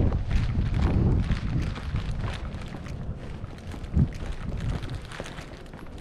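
Footsteps on a concrete driveway and sidewalk, with wind rumbling on the microphone and a single thump about four seconds in. The sound slowly gets quieter.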